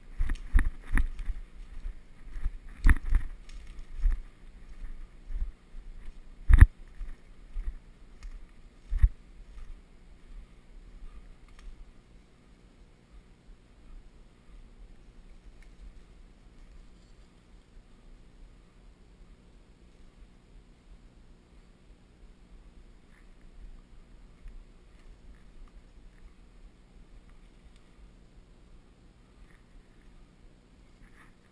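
Footsteps crunching through dry leaf litter and brushing twigs, with irregular knocks close to the microphone and one sharp snap about six and a half seconds in. After about twelve seconds the steps stop and only a faint steady background remains.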